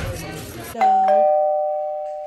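Two-note descending chime, a ding-dong like a doorbell: a higher note a little under a second in, then a lower one a moment later, both ringing on and fading slowly.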